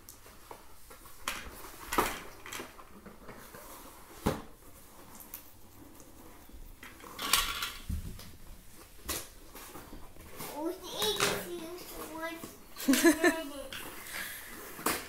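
Scattered knocks and clicks of a plastic LeapFrog electronic book and its box being handled. A young child's voice comes in near the end, ending in a laugh.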